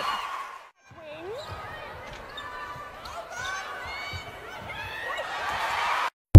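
Netball match sounds on an indoor court: sneakers squeaking in short, sharp chirps on the floor and a ball bouncing, over the hall's background noise. The sound drops out briefly under a second in, at a cut between clips.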